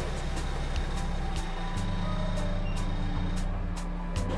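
A car's engine running as it rolls slowly forward, under background music with a steady ticking beat.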